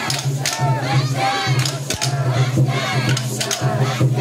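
Crowd of festival float-pullers shouting calls together in repeated shouts as they haul the float's rope.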